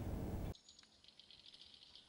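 Near silence: faint studio room tone for about half a second, then cuts off to dead silence.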